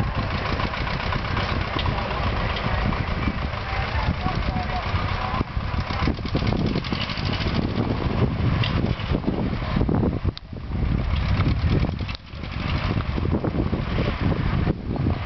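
Engine of a vintage high-clearance tractor running as the tractor drives off along a dirt track.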